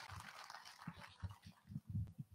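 Faint background noise of a hall with a scattered run of short, soft low thuds that grow a little stronger near the end.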